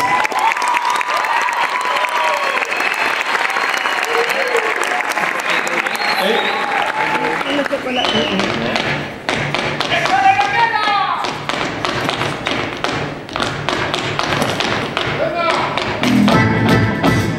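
Audience applause and cheering, then about halfway through a Mexican regional band starts playing with a rhythmic tapping beat.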